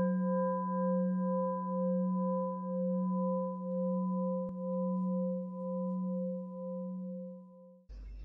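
Singing bowl ringing out after a single strike, with a steady low hum and a wobble about twice a second, fading slowly and cut off just before the end.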